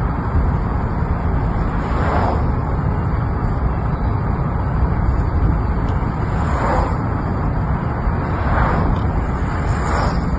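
Road noise inside a moving car: a steady low rumble of engine and tyres, with a few brief swells of hiss about two, seven and nine seconds in.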